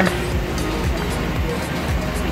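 Background music, steady, with no other distinct event standing out.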